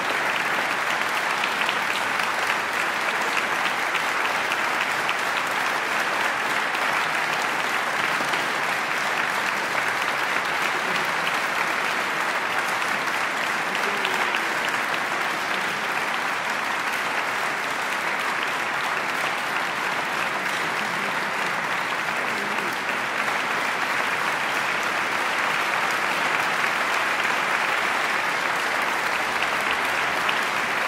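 A large concert audience applauding steadily and continuously, a dense even patter of many hands clapping.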